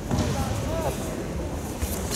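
Indistinct voices of spectators in a large, echoing sports hall, with a brief sharp sound near the end.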